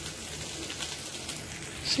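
Beef and bell pepper kebabs sizzling on a hot ridged grill plate: a steady hiss.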